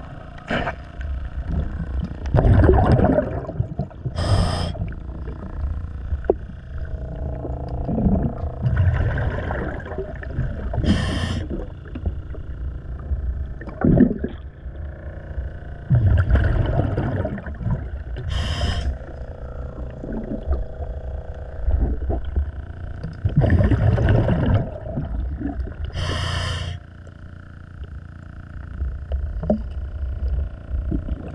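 A scuba diver breathing underwater through a regulator: a low rumble of exhaled bubbles, then a short sharp hiss of inhaled air, four breaths about seven seconds apart.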